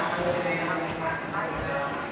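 A person talking, with no words clear enough to make out, as if from a video's soundtrack played into the room.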